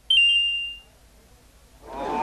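A single high-pitched ding that starts suddenly and fades out within about a second.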